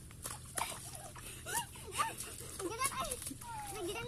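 Faint voices calling out in short bursts without clear words, with scattered clicks and scuffs.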